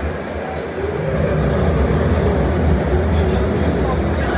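Indistinct voices in a room over a steady low rumble, which grows louder about a second in.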